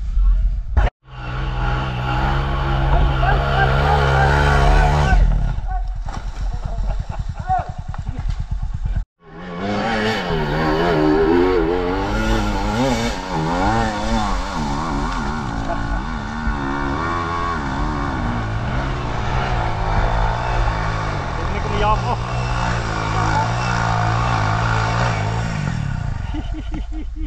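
Off-road enduro motorcycle engines revving hard and unevenly, climbing a steep dirt slope under load, over a steadier engine note underneath. The sound drops out briefly twice, about a second in and about nine seconds in.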